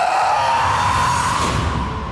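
Trailer score and sound design: a loud sustained tone rising slightly in pitch over a swelling hiss, with a deep rumble coming in about a second in as it builds to the title.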